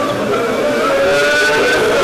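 A crowd of mourners weeping and wailing aloud, many voices crying out together in overlapping, wavering tones.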